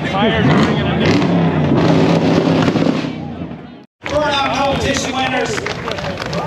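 Car engine held at high revs with sharp crackling pops, in a burnout, over crowd voices. It fades out about three and a half seconds in and cuts off, and crowd chatter follows.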